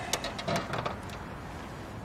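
A few light clicks and knocks of handling in the first second, then a steady faint background hiss.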